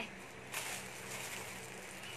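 Faint rustling of plastic clothing bags being handled, starting about half a second in, over a low steady hum.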